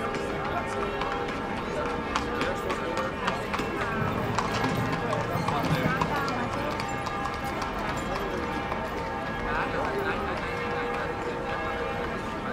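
Hooves of a two-horse carriage clip-clopping on the road amid busy street ambience. People are talking nearby, and music plays in the background.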